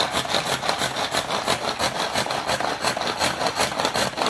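Hand-pulled string food chopper being pulled over and over, its blades spinning and rattling garlic cloves inside the plastic bowl in a rapid, even rhythm as the garlic is minced fine.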